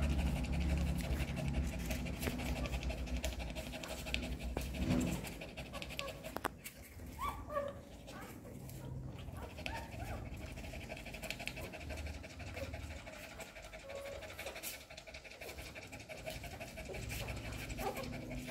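A nursing mother dog panting rapidly with her mouth open, louder in the first few seconds, with a few faint high squeaks from her newborn puppies.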